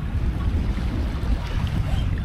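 Wind buffeting the microphone in a low, uneven rumble, over small waves washing on a rocky shore.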